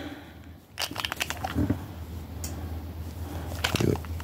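Handling noise from a silver round in a clear plastic coin capsule being turned over in cotton-gloved fingers: a few light clicks and rustles, in small clusters about a second in and again near the end, over a low steady hum.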